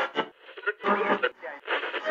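Talking with a thin, radio-like sound that has little low end or top, coming in short bursts.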